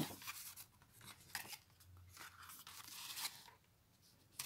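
Faint rustling and sliding of cardstock pages and cards of a handmade scrapbook album being handled and turned over, with a few small ticks of paper edges.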